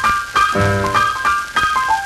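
1948 jump-blues combo recording (piano, trumpet, alto and tenor saxophones, bass and drums) playing short, separated notes and chords, with a falling run of notes in the second second.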